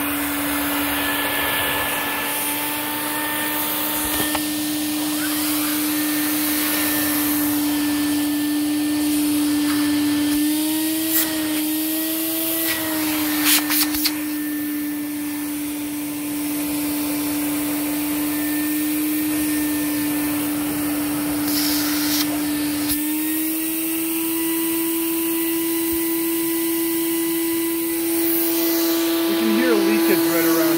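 Quantum QX 8002 water-filtration upright vacuum running steadily with a pitched motor hum, drawing through its hose. The pitch wavers briefly a little before halfway, with a few sharp clicks, and rises slightly about two-thirds of the way through.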